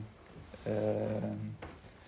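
A speaker's drawn-out hesitation "uh", held at one pitch for about a second between short pauses.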